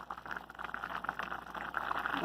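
Rice boiling in a pot of water on the stove: a steady, busy bubbling made of many small quick pops.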